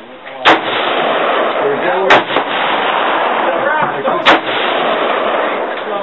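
An AR-15 rifle firing three single shots of 45-grain .223 ammunition, about a second and a half to two seconds apart, each a sharp crack followed by a loud lingering wash of noise until the next.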